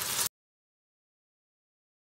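Onions and fish frying in oil in a pan, sizzling for a moment and then cut off abruptly into dead silence.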